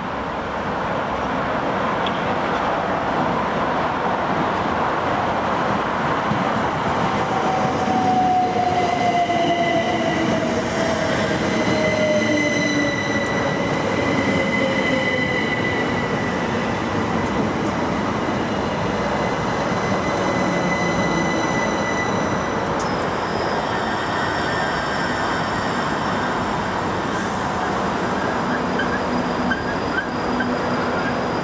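Electric multiple-unit passenger train running into a station and slowing to a stop alongside the platform. A whine falls in pitch as it slows, with a steady high-pitched tone over the rumble. Then the train stands at the platform with its equipment running, with a sharp click about 23 seconds in.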